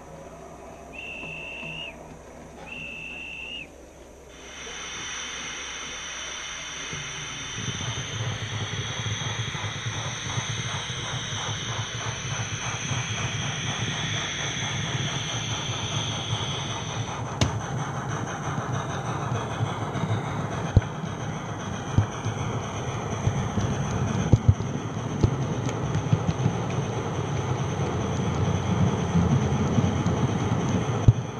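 H0 model train pulling away: two short high toots, then a steady hiss, then running noise that grows louder as the train gathers speed, with scattered sharp clicks over the track.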